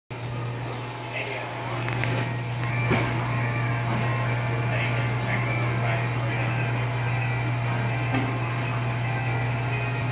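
A steady low hum fills the restaurant counter area, with faint background music and distant voices and a few light clicks and knocks.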